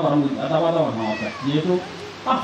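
A man's voice in drawn-out, wavering tones, continuing the speech or chant around it, with a short high rising note about a second in; it tails off near the end.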